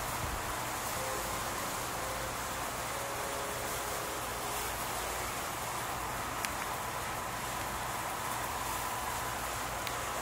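Steady outdoor night background noise: an even hiss with a faint high steady tone running through it, and one short click about six and a half seconds in.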